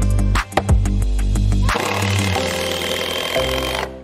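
Background music with a steady beat, which cuts off just before the end.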